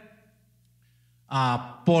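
Only speech: a man talking into a handheld microphone, with a pause of about a second before he goes on.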